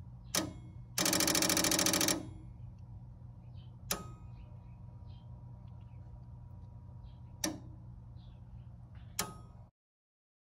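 Relays in a 1980 Williams System 6 pinball machine clicking, four sharp clicks a few seconds apart, plus a loud buzzing chatter lasting about a second near the start, over a steady low electrical hum. The owner ties this clicking relay noise to the test ROM signalling a bad or missing PIA chip. All sound cuts off just before the end.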